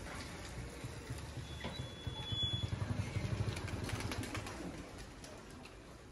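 A motor vehicle engine passing close by, its low, fast-pulsing sound swelling about two seconds in and fading after three and a half.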